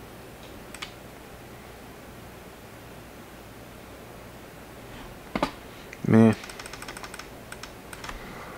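Quick, faint clicking at a computer as photos are stepped through in an editing program, over a low steady hum. A short vocal sound comes just before the run of clicks, about six seconds in.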